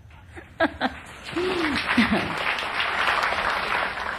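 Large audience applauding, the clapping starting about a second in and holding steady, with a few voices calling out over it.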